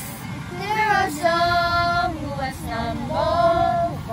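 A woman and children singing a Christian hymn together without accompaniment, several voices holding long notes and gliding between them. A low steady rumble runs underneath.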